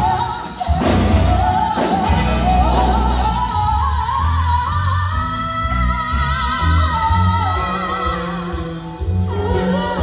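Live rock band with a woman's voice singing long, wavering high notes over bass and drums.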